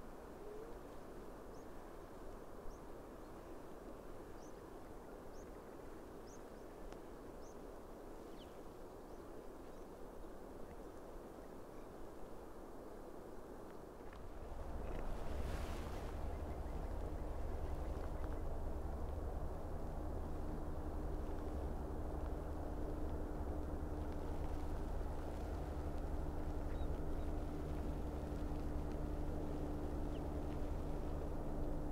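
Quiet open-air ambience with a few faint, short bird chirps. About halfway in, a steady low mechanical hum with several held tones sets in and runs on.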